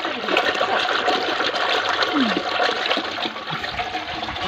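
Curd sloshing and swishing steadily in an aluminium pot as a wooden churning stick is spun back and forth between the palms, hand-churning the curd to separate out the butter.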